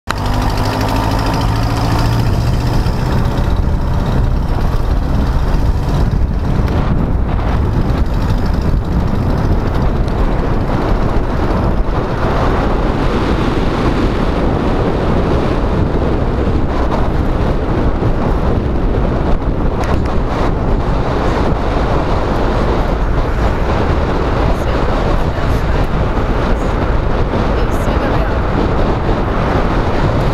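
A car driving along a street, heard from a camera mounted outside on its bonnet: steady heavy wind buffeting and road rumble. Over the first few seconds the engine note rises as the car picks up speed.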